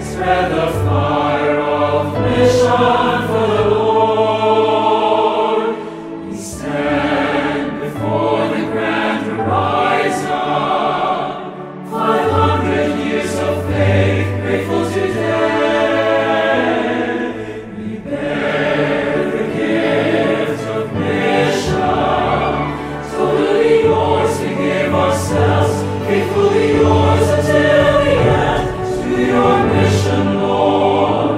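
A choir singing a Christian mission song over instrumental backing with sustained bass notes. Lyrics include "Let the morning star accompany your way", "500 years of faith grateful today" and "To your mission Lord, we give our yes!"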